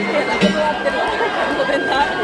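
Danjiri festival music: a bamboo flute holds a long high note that steps down to a lower held note about half a second in, with a single percussion strike at that point, over crowd chatter.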